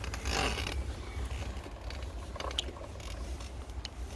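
Low wind rumble on the microphone with irregular scattered clicks and a brief rustle near the start, from a camera carried along a path.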